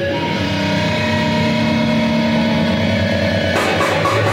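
Amplified, distorted band instruments holding steady ringing tones and feedback with no drums, a sustained drone in a break of a heavy metal set. About three and a half seconds in, the full band crashes back in.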